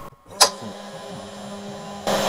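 AnoleX 3030-Evo Pro desktop CNC router starting a job: a sharp click about half a second in, then a steady hum as the gantry moves the spindle down toward the aluminum plate.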